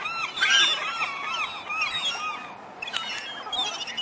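A flock of gulls calling: many short, arched calls overlapping in quick succession, thinning out after about two and a half seconds.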